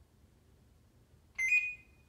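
An electronic doorbell rings once, a short, loud, high-pitched tone lasting about half a second, about a second and a half in.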